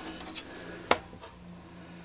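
A single sharp click a little under a second in, as a playing card is picked up off a wooden tabletop, over a faint steady hum of room tone.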